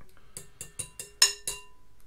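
Metal fork clinking against a glass mixing bowl while stirring thick instant mashed potato: about seven irregular knocks, each leaving a brief ringing tone from the glass, the loudest just past a second in.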